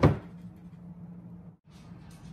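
A thump at the start as the plastic-wrapped glass mixing bowl is handled on the counter, then quiet room noise with a low steady hum that cuts out briefly about one and a half seconds in.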